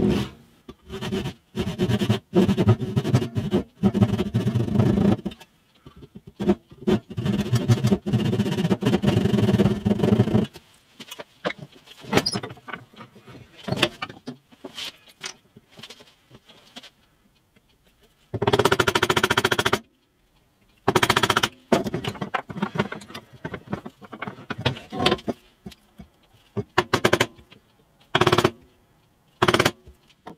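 Back saw cutting by hand into a wooden block with quick, short strokes, in two runs of about five seconds each. After that come scattered shorter scrapes and knocks as the recess is worked.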